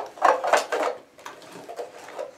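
Hands handling a pink plastic Barbie storage case and the small plastic accessories in it. There is a sharp click at the start, a louder clattering rattle through the first second, then a few light clicks.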